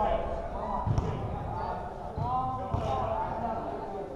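A basketball bouncing a few times on a gym floor, with voices of players and spectators carrying through the large hall.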